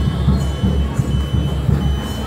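A high electronic beep repeating on and off, each beep about half a second long, over a loud, irregular low thumping.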